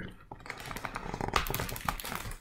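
Soft rustling and a run of small clicks from a book and camera being handled, with a noisier stretch of rustling in the second half.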